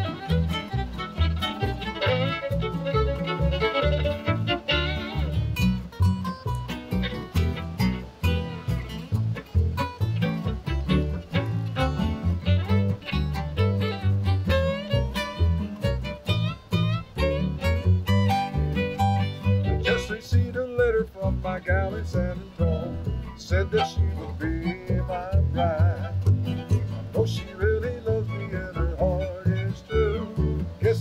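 Country string band playing an instrumental break: a fiddle carries the melody over strummed acoustic guitars and a plucked upright bass in a steady rhythm.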